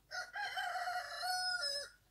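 A rooster crowing once: a single drawn-out call of nearly two seconds, holding its pitch and then dropping away at the end.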